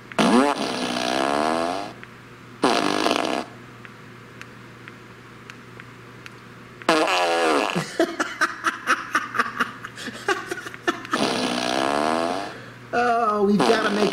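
Remote-controlled Fart Machine No. 2 playing its prerecorded fart sounds through its speaker, one after another at each press of the remote. There are drawn-out wavering ones, a short one, and a rapid sputtering one, with a pause of a few seconds in between.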